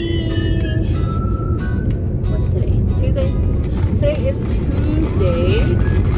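Steady road noise inside the cabin of a moving car, with background music playing over it.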